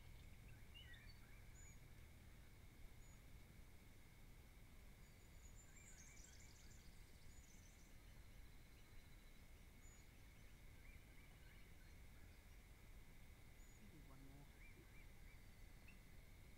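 Near silence: faint outdoor ambience with a steady thin high tone and scattered faint bird chirps, a short cluster of them about six seconds in.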